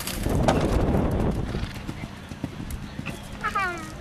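A horse's hooves landing and galloping on the sand arena footing just after clearing a show jump close by, loudest in the first second, then fading as the horse moves away.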